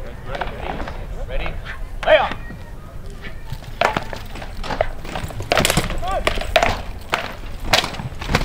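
Rattan weapons striking shields and armour as two armoured fighters trade blows: a run of sharp knocks, thicker and louder in the second half, with onlookers' voices talking in between.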